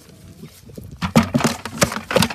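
A fish thrashing in a plastic bucket: a quick run of loud knocks and slaps against the bucket's sides, starting about a second in.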